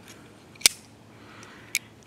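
Boker Kalashnikov push-button automatic knife clicking in the hand: one sharp snap about two-thirds of a second in, typical of the spring-driven blade firing open, then a second, slightly quieter click near the end.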